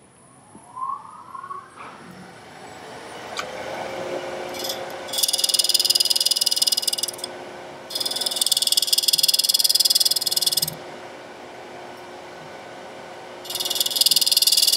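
A small wood lathe's motor spinning up with a rising whine, then running with a steady hum. A steel divider point pressed against the spinning wooden lid scratches it three times in loud, rhythmically pulsing rasps of two to three seconds each, scribing the diameter of the inlay recess; the last rasp begins near the end.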